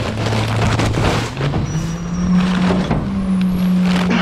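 Rear-loader garbage truck's diesel engine climbs from idle to a higher steady speed about a second in, the speed-up that drives the packer's hydraulics. Paper yard-waste bags rustle and knock as they go into the hopper.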